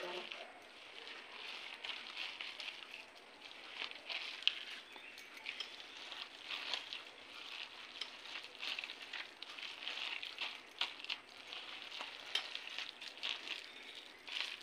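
Hands squishing and mixing shredded colocasia leaves with a wet flour and spice mix in a steel bowl: soft, irregular wet crackling with small clicks.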